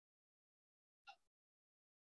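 Near silence on a remote-meeting audio feed, broken once about a second in by a brief, faint sound lasting about a quarter of a second.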